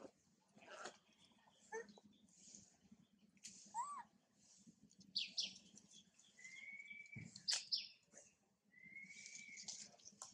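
Faint birdsong: scattered high chirps and clicks, with two held whistled notes, each under a second, in the second half.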